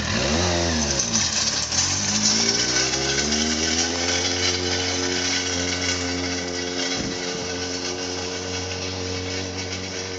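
Triumph TT600 inline-four sport-bike engine revving hard as the motorcycle pulls away, its note climbing twice through the revs, then settling to a steady high note and slowly fading as the bike rides off.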